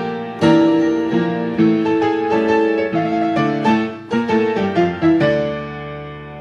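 Solo upright piano playing a habanera-rhythm tango, with chords and melody notes struck several times a second. Near the end it settles on a held chord that dies away.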